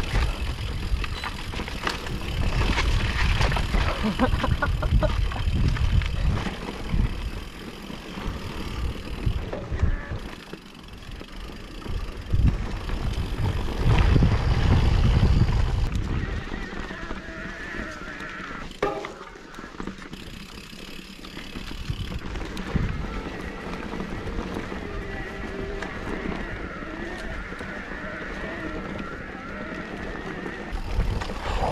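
Mountain bike ridden over a rough, sandy dirt trail, heard from a camera on the bike: tyres rolling and the bike rattling over bumps, with heavy gusts of wind on the microphone, the strongest in the middle of the stretch.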